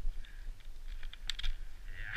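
A quick run of sharp plastic clicks, mostly about one to one and a half seconds in, from gloved hands working the buckles of a ski boot, over a low steady rumble.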